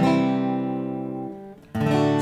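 Acoustic guitar strumming a full open C chord once and letting it ring out and fade, then strummed again near the end.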